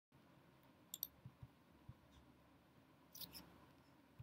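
Faint clicks from a computer pointing device over near silence: a quick pair about a second in and another pair a little after three seconds.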